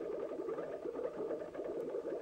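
Faint, steady bubbling and fizzing in a film soundtrack, the sound of a room filled with fizzy lifting drinks.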